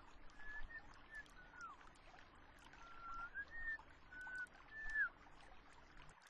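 Faint pond ambience: a low wash of water with about eight short, clear whistled notes scattered through it, some ending in a downward slide.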